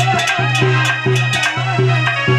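Live devotional folk song: a hand drum beats a quick, even rhythm of about four strokes a second over a steady low held note, while a woman sings.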